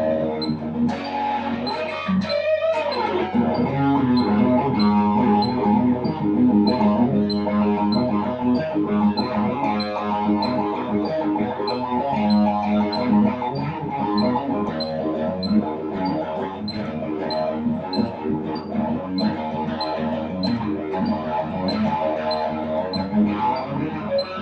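Electric guitar, a Stratocaster-style solid-body, played as an instrumental rock lead with quick picked melodic runs, over a steady ticking beat.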